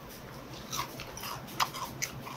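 A person chewing a mouthful of food, with a few soft, irregular mouth clicks.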